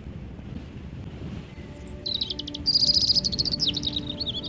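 A songbird singing in quick, high chirps and rapid trills. It starts about halfway through and is loudest near the end, over a low steady rumble.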